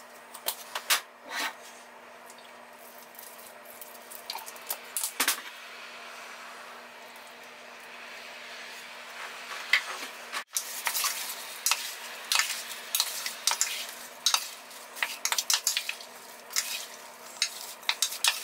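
A few scattered knocks as food goes into a slow cooker's crock. From about halfway, a wooden spoon stirs chopped vegetables in the crock with rapid, irregular clicks and scrapes.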